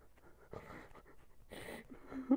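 A man crying with his face in his hands: two faint, heavy breaths or sniffs, one about half a second in and one near the end.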